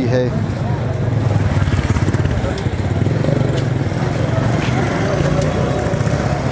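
Street noise in a busy market: motorcycle engines running steadily, with people's voices in the background.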